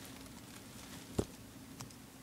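Faint room tone with a steady low hum, broken by one light tap about a second in and a smaller tick near the end.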